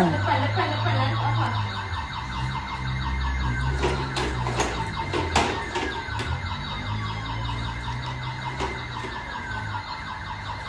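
A continuous high, fluttering squeal from the ride-on toy pony and the toy police car it drags along, with a low hum coming and going beneath it and a few light knocks.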